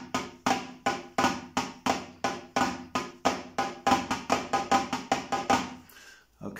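Flam taps played on a Roland electronic drum kit's snare pad: a steady, even run of strokes at about three a second, each a flam with a short ringing snare tone. The playing stops at the very end.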